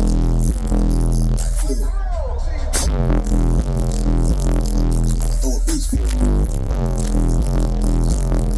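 Electronic music with deep, steady bass played through a car audio system's bank of large subwoofers.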